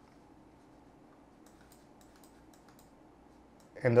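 Faint, scattered clicks from computer controls, a keyboard or mouse, over quiet room tone. Speech starts near the end.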